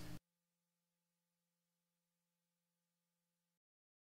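Near silence: a very faint steady hum that cuts off to dead silence about three and a half seconds in.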